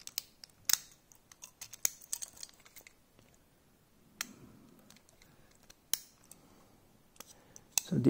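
Scattered small clicks and taps from a toy tractor and its plastic trailer being handled and turned over in the fingers, several in quick succession in the first two seconds, then single sharper ones around four and six seconds in.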